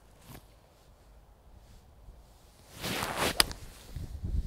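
Golf iron shot: after a quiet address, a short swish of the swing builds about three seconds in and ends in one sharp click as the clubface strikes the ball.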